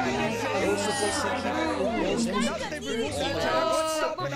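Several voices talking over one another in a jumble of overlapping chatter, over a low steady hum.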